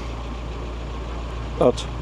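VW T5 van's engine idling: a steady low rumble.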